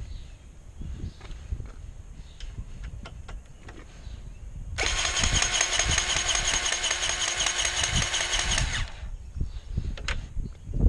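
Battery-powered grease gun's motor running steadily for about four seconds, pumping grease into a loader-arm pivot fitting on a skid steer. It starts about five seconds in and cuts off suddenly.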